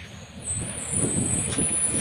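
Street traffic: a low, steady rumble of a passing vehicle, with a thin high whine held above it from about half a second in.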